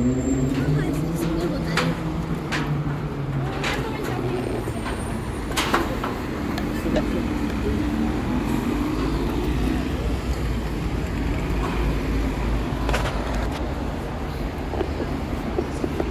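Steady city road traffic, buses and cars, with people's voices talking now and then and a few short sharp clicks.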